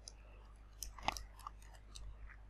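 A few faint computer-keyboard keystroke clicks, clustered about a second in, over a low steady hum.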